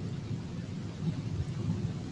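Steady low rumbling background noise with no speech: the line and room noise of a recorded conference call.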